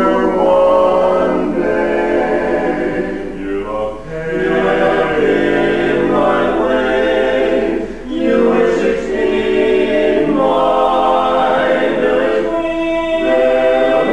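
Male barbershop quartet singing a cappella in close four-part harmony, in held chords broken by short pauses about four and eight seconds in.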